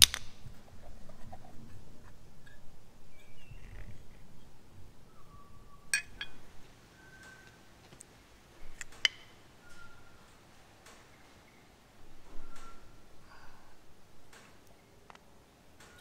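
Parts of a Land Rover Defender rear wiper motor being handled and taken apart by hand: scattered light clicks and clinks of the housing, shaft and gear, with sharper clicks about six and nine seconds in.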